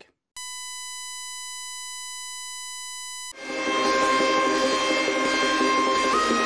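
A steady electronic beep tone, one unchanging pitch, held for about three seconds and cut off abruptly. Outro music with a held melody line fades in straight after it.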